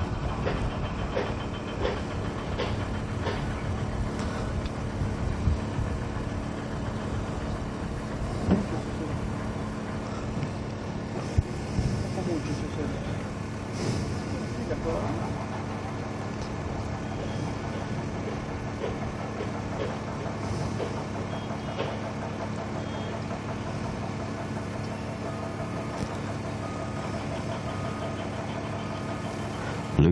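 A steady motor hum with indistinct voices under it, broken by a few short sharp knocks.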